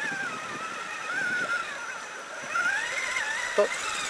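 Brushless electric motor of a Traxxas Summit RC truck whining, its pitch rising and falling with the throttle as it crawls through a stream, over a steady hiss of water. A brief sharp sound comes near the end.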